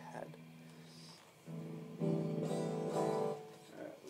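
Ibanez Gio electric guitar being played: a held note rings and fades, new notes are picked about a second and a half in, and a louder chord is struck at about two seconds that rings for over a second before dying away near the end.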